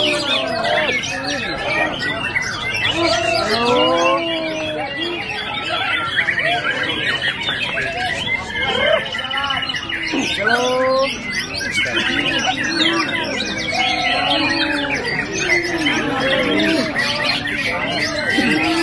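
Many caged white-rumped shamas (murai batu) singing at once, a dense overlapping chorus of quick whistles and chatter, with human voices calling out over it every second or two.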